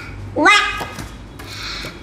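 A child's voice: one short, high-pitched vocal sound that rises in pitch, about half a second in, with no recognisable word.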